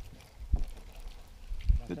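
Low rumble of wind on the microphone with a few faint knocks, and a man's voice starting right at the end.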